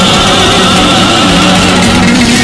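Cádiz carnival comparsa chorus of male voices singing in full voice, holding sustained notes over its accompaniment.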